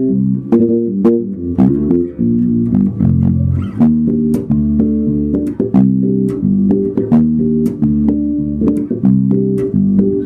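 Skjold six-string electric bass played through an amplifier: a continuous run of plucked notes, several a second, heard through a camera microphone.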